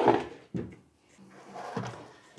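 Honeycomb bed being slid into its tray slot under a desktop CO2 laser cutter: a short knock about half a second in, then a longer sliding scrape through the second half.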